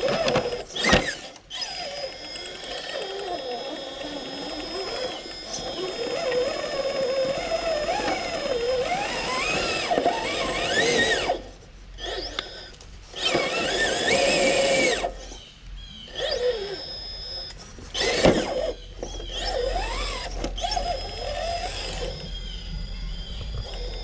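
RC rock crawler's Yellowjacket 2000kv brushless motor and Stealth X transmission whining, the pitch rising and falling with the throttle as it climbs over rock, stopping twice for a moment. Sharp knocks near the start and again later, from tyres and chassis striking rock.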